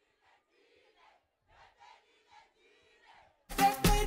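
A break in the dance music: the track cuts out and only faint crowd voices shouting are left. The music drops back in suddenly at full level about three and a half seconds in.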